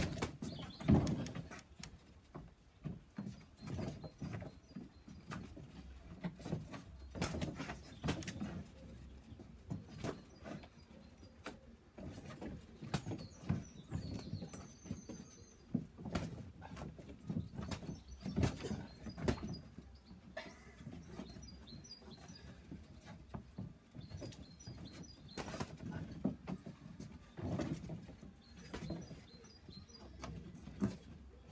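Boxing gloves landing punches, and feet moving on wooden decking, during sparring: a run of sharp thuds at irregular intervals.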